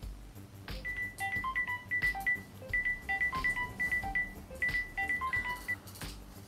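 Mobile phone ringtone: a short electronic melody of high beeping notes, repeated three times about every two seconds, as an incoming call rings.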